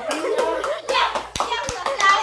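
A small group clapping hands in quick, uneven claps, mixed with children talking.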